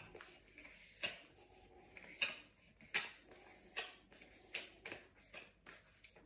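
A deck of tarot cards being shuffled by hand: a series of soft, short swishes of cards sliding against each other, coming quicker near the end.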